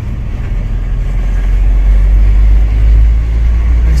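A car's engine and road rumble heard from inside the cabin, a deep steady drone that grows louder about half a second in as the car pulls away from a turn.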